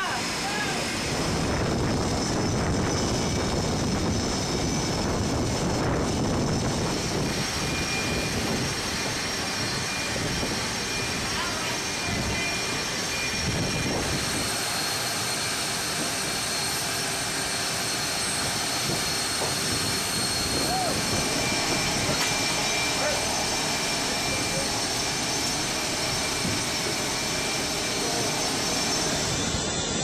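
Aircraft carrier flight-deck noise: jet aircraft engines running, a continuous roar with thin steady high whines, shifting in tone about halfway through.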